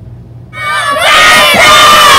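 A large group of schoolchildren shouting together, starting about half a second in, quickly growing loud and held as one long cheer.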